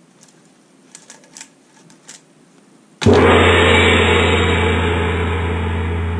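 A few light clicks and taps as the plastic toy nunchaku is set down on its card, then about halfway a sudden loud gong-like hit that rings on with a deep steady hum and fades slowly.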